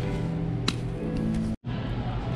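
Background music with sustained low notes. There is a single short click about two-thirds of a second in, and the sound cuts out completely for an instant near the end.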